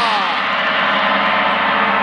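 A gong ringing with a dense, sustained shimmer of many tones. Right at the start, a few of its tones slide downward in pitch.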